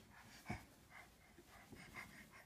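Near silence with a soft thump about half a second in and a few fainter taps after it: a crawling baby's hands and knees on carpeted wooden stair treads.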